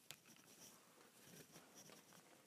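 Near silence, with one faint click just after the start and a few fainter taps in the second half: hands handling and clipping together a plastic car key fob.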